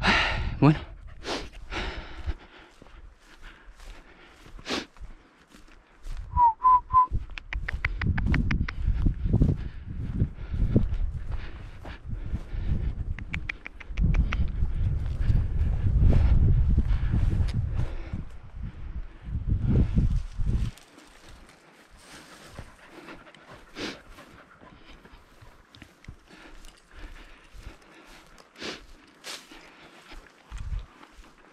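Wind buffeting the microphone in long gusts, over steps and scuffs through dry grass and field stubble. About six seconds in come three short whistled notes.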